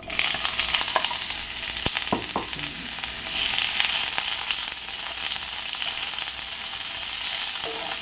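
Sliced onions dropped into hot oil in a cast-iron skillet, sizzling: the sizzle starts suddenly as they go in and holds steady while they are stirred with a wooden spoon. A few knocks sound about one to two seconds in.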